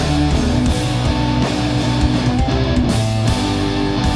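Live rock band playing an instrumental passage: distorted electric guitar over electric bass and drums, with regular drum hits.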